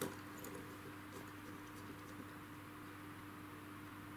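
Faint small ticks and scrapes of a drafting compass being handled and its opening adjusted, over a low steady hum.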